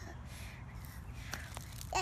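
Quiet outdoor background with a steady low rumble and a couple of faint clicks near the end.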